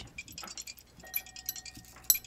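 Pennies being put into a glass dish of vinegar and salt: a string of faint, light clinks of coins on glass. A faint thin steady tone comes in about halfway.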